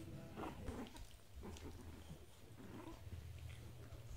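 Faint puppy vocal sounds while the dogs play together, a few short wavering yips or grumbles about half a second in and again near three seconds, over a steady low hum.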